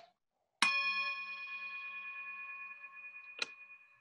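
A metal chime struck once, ringing with several clear overtones that fade slowly over about three seconds, with a short tap just before it dies away.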